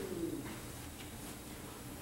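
A person's low vocal moan, falling in pitch and fading out about half a second in, followed by quiet room tone.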